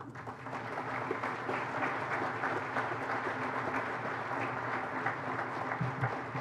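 Audience applauding, a dense patter of many hands clapping that builds over the first second and then holds steady.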